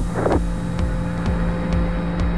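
Steady hiss and hum of a radio voice link in a pause between words of a space-to-ground transmission. Under it runs background music with a low pulsing beat.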